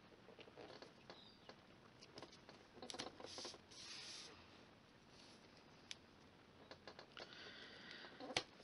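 Faint rustling and rubbing of hands pressing double-sided tape down onto cardstock, with a couple of brief scuffs about three to four seconds in and a single sharp tick near six seconds.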